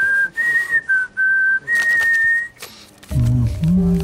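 A person whistling a short tune of five held notes, moving between two pitches, over about two and a half seconds. Low background music comes in about three seconds in.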